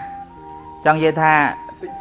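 A man's voice speaks briefly about a second in, over soft electronic background music with long held notes.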